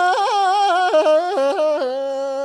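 A single voice singing a Tibetan folk song, pitched high, with quick yodel-like turns and trills ornamenting the melody.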